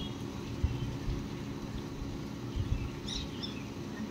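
Wind buffeting the microphone in a low, uneven rumble, with a few faint bird chirps about three seconds in.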